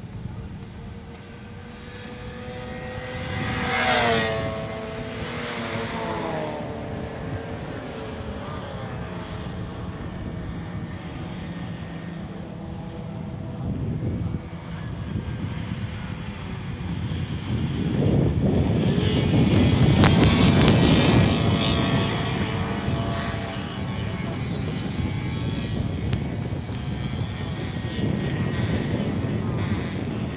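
Classic Austin Mini race cars running flat out in a pack. One car passes close about four seconds in, its engine note falling in pitch. A louder bunch of cars goes by about eighteen to twenty-two seconds in.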